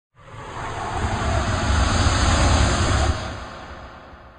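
Title-intro sound effect: a rushing swell of noise over a deep rumble that builds within the first second, holds, then drops away and fades out after about three seconds.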